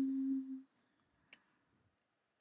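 A woman humming one steady note with her mouth closed, which stops about half a second in; a faint single click follows about a second later.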